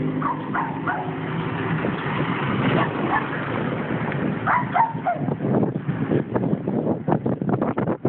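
A dog barking and yipping in short bursts. A car engine fades out in the first second.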